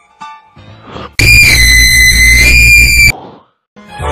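A very loud, distorted, high-pitched scream sound effect, starting about a second in and held for about two seconds before cutting off suddenly.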